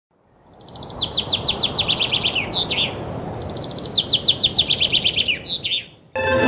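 A songbird singing two phrases, each a quick run of about a dozen clear notes falling in pitch and closing with a couple of separate notes, over a low steady background rumble.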